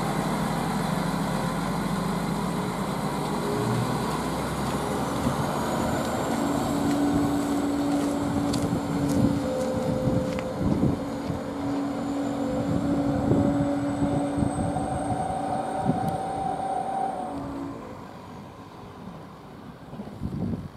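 ČD class 814 Regionova diesel railcar pulling away: the engine runs steadily, and from about six seconds in a whine slowly rises in pitch. Scattered clicks from the wheels on the track come through the middle, and the sound fades as the railcar draws off near the end.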